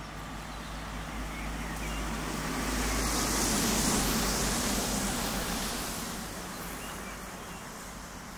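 A road vehicle passing by out of sight: tyre and engine noise swelling to a peak about four seconds in, then fading away.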